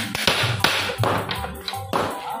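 Hand hammer striking a chisel or punch on copper sheet: several sharp metallic taps at an uneven pace, over background music.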